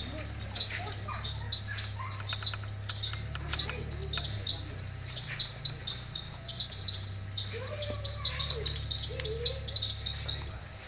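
A bird chirping over and over: short, high chirps about once a second, sometimes two close together, over a steady low hum.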